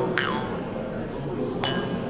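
Jaw harp plucked at the mouth: a steady low buzzing drone whose overtones sweep up and down like vowels. It is plucked again just after the start and once more near the end.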